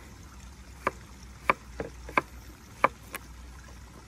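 Kitchen knife slicing a cucumber on a wooden cutting board: six sharp knocks of the blade meeting the board, roughly every half second, two of them softer.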